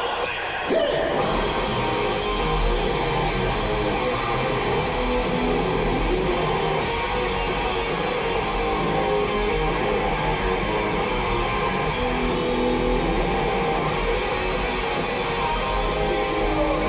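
Live hard rock band playing: electric guitars, bass and drums. The full band comes back in hard about a second in, after a brief drop, and plays on steadily.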